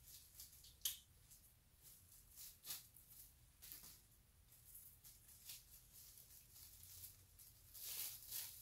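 Faint, scattered crinkling of plastic cling wrap as hands smooth and press it around a paper photo printout, with a sharper crackle about a second in.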